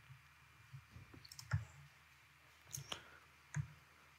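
A handful of faint, scattered computer mouse clicks over quiet room hiss.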